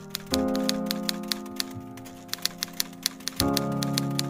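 Typewriter keys clacking at a steady pace, about four or five strokes a second, over background music of sustained chords that change about a third of a second in and again near the end.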